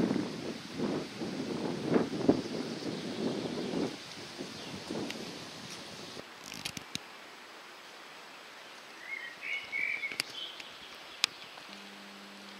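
Outdoor ambience with gusts of wind rumbling on the microphone for the first few seconds, then quieter steady background hiss with a few sharp clicks.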